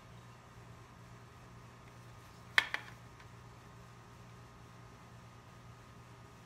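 Two sharp plastic clicks a fraction of a second apart, about two and a half seconds in, the first much louder, as the split plastic case of an EGO 56V lithium battery pack is handled. A low steady hum lies underneath.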